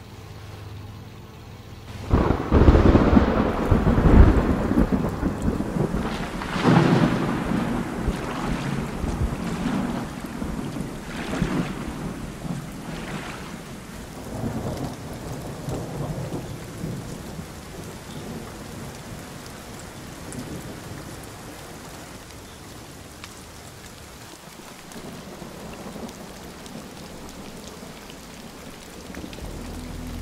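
A thunderclap about two seconds in, rolling on in several swells of rumbling that die away over the next dozen seconds, over steady rain.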